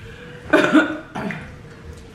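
A person coughing, with a sharp cough about half a second in and a softer one shortly after.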